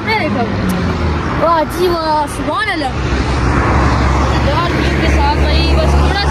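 A road vehicle going by close at hand: a low engine drone and rushing tyre noise swell up about halfway through.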